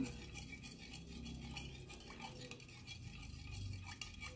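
Metal teaspoon stirring a powdered supplement drink in a glass: a run of faint light clinks and scrapes of the spoon against the glass.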